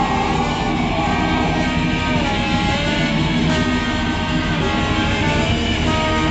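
Punk band playing live, loud and steady: electric guitars ringing out held notes that step from pitch to pitch over bass and drums.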